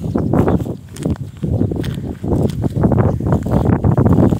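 Footsteps walking over grass and dry, cracked mud: an uneven run of steps.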